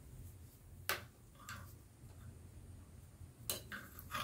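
A few faint clicks of wooden knitting needles tapping together as purl stitches are worked, the sharpest about a second in, over a low steady hum.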